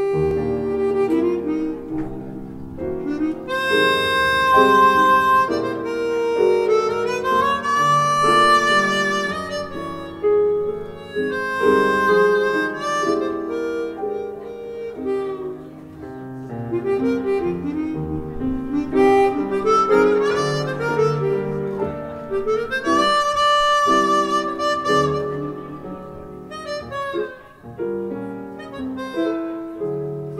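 Live jazz quartet: a chromatic harmonica plays a slow ballad melody in long held notes that slide between pitches, accompanied by piano, double bass and drums.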